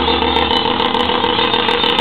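Mazda 12A twin-rotor rotary engine in a Toyota Corolla running steadily at an even pitch.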